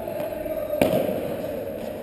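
A padel ball hit once with a sharp knock about a second in, echoing around the indoor hall.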